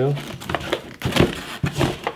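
Cardboard and plastic packaging rustling and crinkling in an irregular run of bursts as the contents are pulled out of a paintball goggle box.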